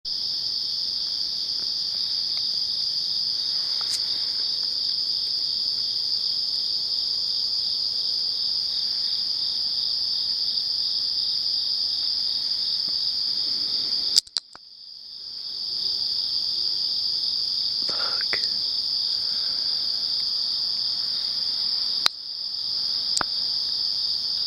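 A steady chorus of crickets, a high, finely pulsing chirring. About halfway through a sharp click breaks in and the chorus drops out, then fades back in over a second or two; a second click comes near the end.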